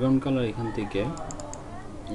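A few quick computer-keyboard keystrokes, typing a number into a field, about halfway through, after a short stretch of a man speaking.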